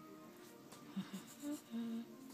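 Faint background music with steady held tones, and a person humming three short notes in the second half, the last one held a little longer.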